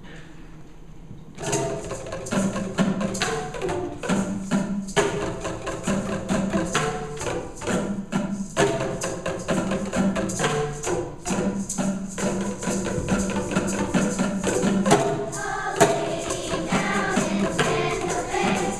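Children's choir singing with Boomwhackers (tuned plastic tubes) struck in a steady rhythm, starting about a second and a half in.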